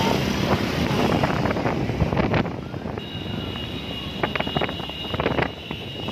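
Road traffic noise with wind rushing over the microphone, loud for the first couple of seconds and then quieter. A steady high-pitched tone comes in about halfway, with a few sharp clicks.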